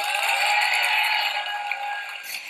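Studio audience applauding under a short TV show jingle with held synth notes that start suddenly.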